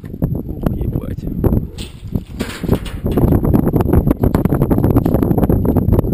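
Loud rushing noise with many sharp knocks and rattles as a rope-jump rope pays out and shakes against the tower's metal railing while the jumper drops, with wind buffeting the microphone.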